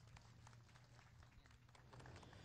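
Near silence: a faint steady low hum with faint, scattered hand claps as the boxer is introduced.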